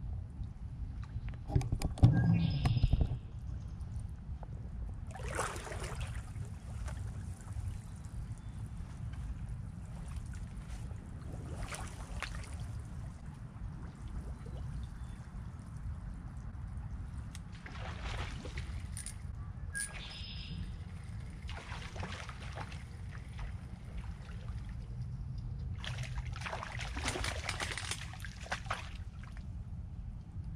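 Water sloshing and lapping at a pond's edge over a steady low rumble, with soft rushing swells every few seconds and one louder burst about two seconds in.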